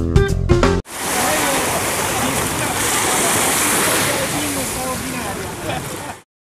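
Music with singing that cuts off abruptly under a second in, followed by steady noise of shallow sea water sloshing and small waves breaking at the shore, with faint voices in the background.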